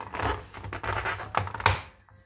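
HP Omen laptop's bottom cover scraping and rubbing against the chassis as it is pressed down and slid forward under the hands, with two sharp clicks near the end.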